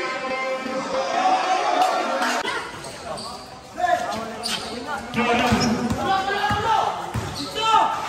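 Basketball bouncing on a concrete court during play, the thumps coming mostly in the second half, over shouting voices of players and onlookers.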